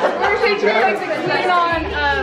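Several people talking over one another, with laughter near the end.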